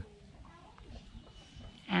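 A quiet pause in conversation: faint background ambience with a few soft, indistinct distant sounds. A voice resumes right at the end.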